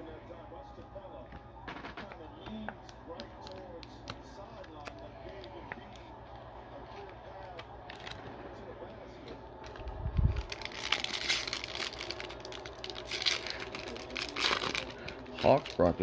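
A trading card pack's wrapper being torn open and crinkled: scattered small clicks and handling noises, a low thump about ten seconds in, then a dense crackling rustle for about four seconds.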